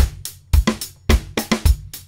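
Sampled acoustic drum loop playing back: kick drum, snare and hi-hats in a steady groove of about 107 beats a minute.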